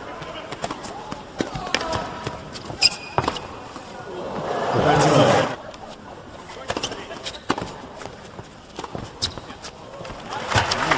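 Tennis rally on an indoor hard court: sharp pops of the ball off racket strings and its bounces, at irregular intervals. A crowd reaction swells about four and a half seconds in and stops abruptly about a second later.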